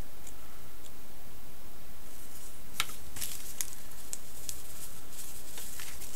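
Light scratching and clicking of fine ballast grit being worked on a small model base over paper, in quick irregular clusters from about two seconds in, over a steady background hiss.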